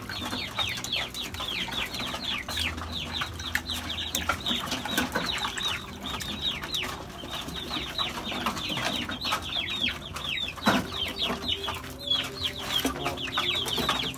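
A flock of young chickens peeping on and on, many short falling chirps overlapping, with a single knock late on.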